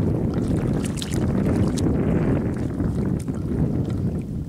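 Wind buffeting the microphone outdoors, a steady low rumble, with a few light crackles about a second in.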